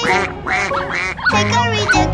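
Children's nursery-rhyme music with a bass beat, overlaid with cartoon duck quacks.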